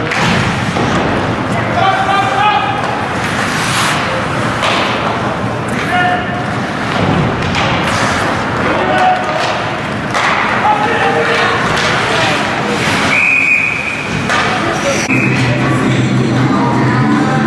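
Ice hockey rink sounds in an echoing arena: scattered shouts from players and spectators, and the knocks and thuds of sticks and puck against the boards. Near the end comes a single steady blast of a referee's whistle stopping play.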